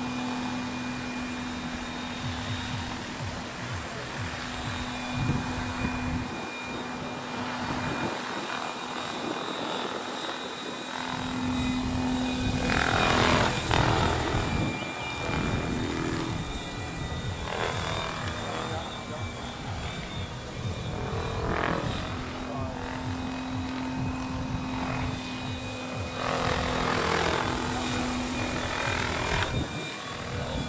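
Radio-controlled scale model Boeing CH-47 Chinook helicopter in flight. Its tandem rotors and drive give a steady whine, and the sound swells louder several times as it passes, most of all about thirteen seconds in.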